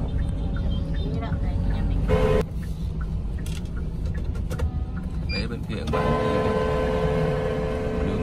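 Road and engine rumble heard from inside a moving car in city traffic, with a short horn toot about two seconds in and a steady horn-like tone from about six seconds in that holds until near the end.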